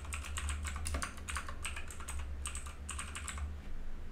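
Typing on a computer keyboard: a quick, uneven run of keystrokes that stops shortly before the end, over a steady low hum.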